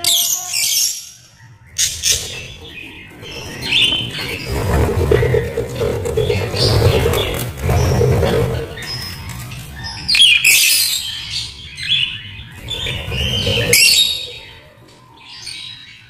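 Budgerigars and lovebirds chirping and squawking, short sharp calls coming in clusters, busiest about ten to fourteen seconds in.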